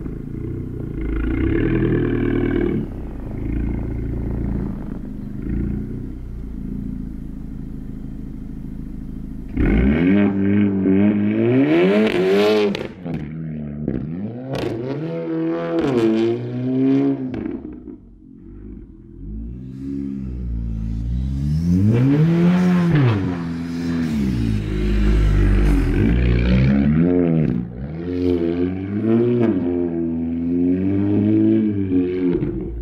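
Audi A3 sedan with an APR Stage 2 tune, its turbocharged four-cylinder engine running at a low steady pitch for the first nine or so seconds while drifting in snow. About a third of the way in it gets louder and revs up and down again and again as the car spins donuts.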